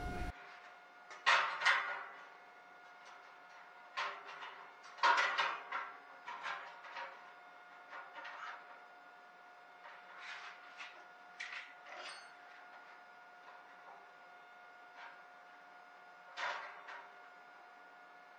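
Scattered knocks and clatters of a metal bar being handled and set against a metal frame, some in quick runs of two or three, over a faint steady hum.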